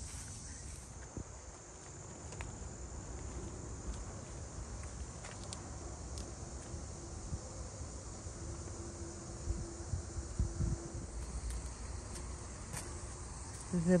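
A steady, high-pitched drone of insects, with faint low rumbling beneath.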